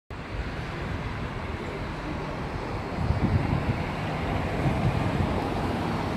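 Outdoor background noise: a steady rush with irregular low rumbling that grows a little louder about halfway through.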